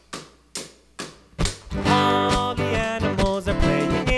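A steady beat of sharp drum hits, about two a second, for the drum solo; about a second and a half in, strummed acoustic guitar comes back in over the beat and the song carries on.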